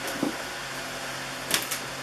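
A few short, light knocks and clicks about one and a half seconds in, with a fainter one just after the start, from things being handled on a bakery bench, over a steady low hum.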